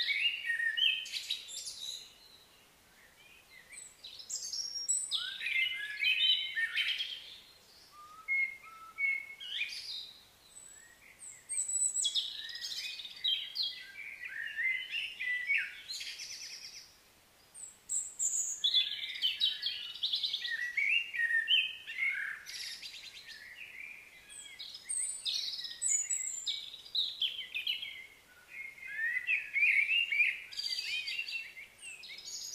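Birds chirping and singing: many quick, high chirps and trills in overlapping bursts, with a few brief lulls.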